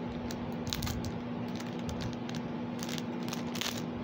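Plastic packaging crinkling as a small wrapped item is handled and unwrapped, in a few short bursts, the longest near the end. A steady low hum runs underneath.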